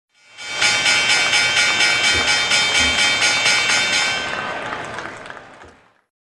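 Logo intro sound effect: a bright, noisy whoosh with high ringing tones, pulsing evenly about four times a second. It fades out over the last two seconds.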